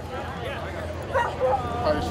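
A dog barking and yipping a few times in the second half, amid people talking.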